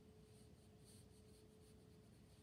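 Very faint watercolour brush strokes on paper: a quick run of soft dabs and scrubs as ivory black paint is worked in, over a faint steady hum.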